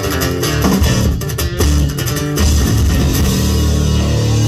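Live rock band playing an instrumental passage on guitars, bass guitar and drums: a stop-start riff with sharp hits, then a held chord ringing out from about two and a half seconds in.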